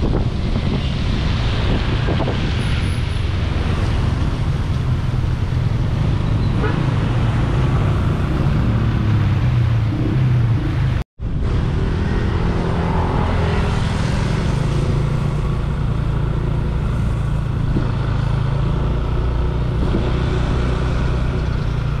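Motorbike riding along a wet road: steady engine and road noise with a heavy low rumble of wind on the microphone. The sound cuts out for an instant about halfway through.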